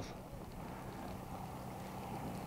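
Faint, steady outdoor background noise with a low hum underneath and no distinct events.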